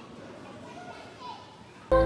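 Faint distant voices, like children playing, with thin rising and falling calls over a quiet background. Just before the end, background music with steady held organ-like notes starts abruptly and much louder.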